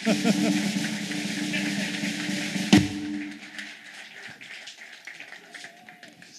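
Audience applauding with music playing under it, a sharp knock about three seconds in, after which the applause and music die down.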